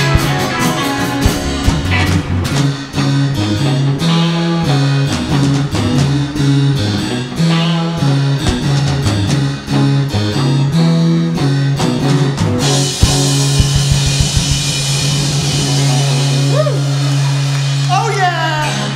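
Live rock band, electric guitars, bass and drum kit, playing the instrumental ending of a 1960s British Invasion-style song. The beat stops about 13 seconds in, and the band holds a final ringing chord over a long cymbal wash.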